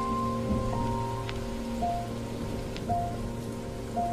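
Steady rain falling, under soft, quiet music of held chord notes that change every second or so.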